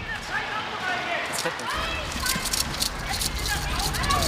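Distant shouting and screaming voices, a woman in distress amid a loud argument. From about a second and a half in, quick footsteps of people running on a path, several steps a second.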